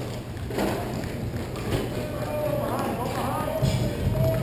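Ice hockey game sound: scattered clacks of sticks and pucks against a steady wash of rink noise, with voices of players and spectators calling out in the second half.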